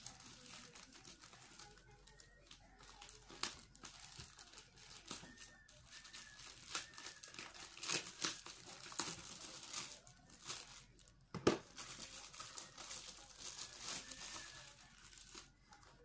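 Plastic parcel packaging being crinkled and torn open by hand: irregular crackling and rustling, with one sharp snap about two-thirds of the way through.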